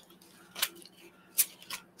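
Three short, sharp clicks from something being handled, the loudest about a second and a half in, over a faint steady hum.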